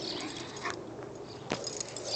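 A dog right at the microphone as it runs past, with a sharp click about a second and a half in.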